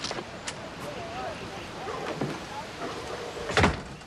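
A door banging shut about three and a half seconds in, the loudest sound, over faint background voices.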